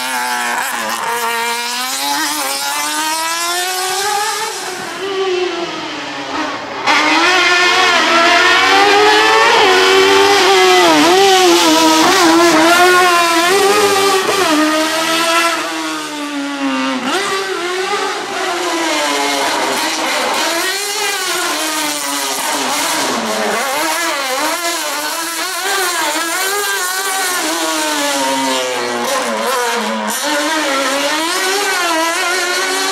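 Small hatchback slalom race car's engine revving hard, its pitch rising and falling every second or so as the throttle is opened and lifted through the cones. It gets abruptly louder about seven seconds in.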